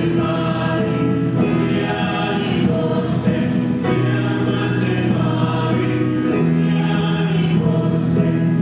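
Church choir singing a hymn in long held chords that change every second or two.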